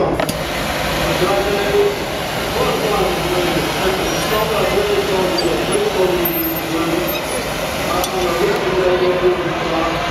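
People talking indistinctly in the background over a steady rushing noise.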